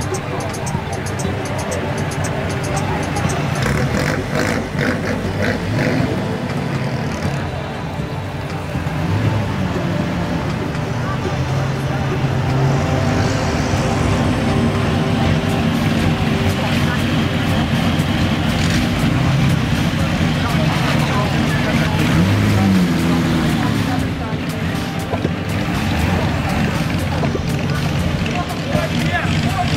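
Engines of pre-war classic cars idling and moving off slowly, one after another, with one engine briefly revved about 22 seconds in; a crowd's chatter and a public-address voice run underneath.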